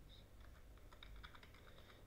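Faint typing on a computer keyboard: a run of light, irregular keystroke clicks.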